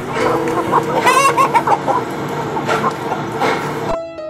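Several domestic chickens clucking and calling, with a quick warbling run of clucks about a second in.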